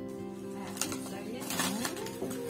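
Music with steady held tones, under voices and short crackles of paper being handled, twice.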